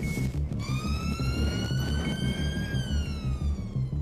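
Police car siren sounding one slow wail, rising in pitch for about two seconds and then falling, over a pulsing low music beat.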